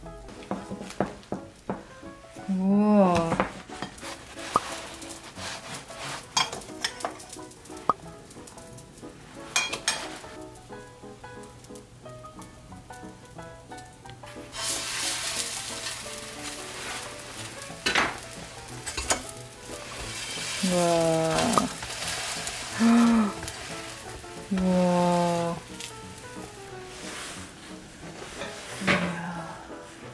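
Hotteok (filled Korean sweet pancakes) frying in an oiled stainless steel pan, sizzling steadily from about halfway through. Scattered light clicks come before it, and background music with short gliding notes plays over the sound.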